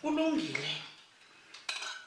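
Metal spoon scraping and clinking on a plate as someone eats, the sharpest sound coming near the end. A short voiced sound is heard at the start.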